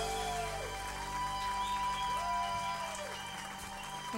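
Live band playing the soft instrumental close of a slow ballad: long held chords that swell and fade, growing quieter toward the end.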